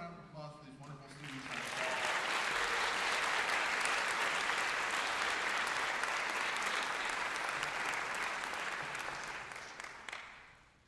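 Audience applauding, starting about a second in, holding steady, then dying away near the end.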